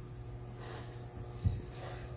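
Quiet workbench room tone with a steady low hum, then a single short, soft knock about one and a half seconds in as a small screwdriver is set down on the padded bench mat.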